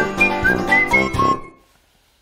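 Short whistled jingle over light backing music, a quick melody of high notes ending on a held note that fades out about a second and a half in.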